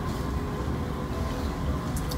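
Steady low background rumble with a faint hum, no distinct events: room tone in a pause between speech.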